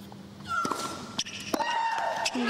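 Female tennis player shrieking as she strikes the ball, with sharp racket-on-ball pops. A short falling cry on the serve about half a second in, another pop a little after a second, then a second, longer shriek on the next stroke near the end.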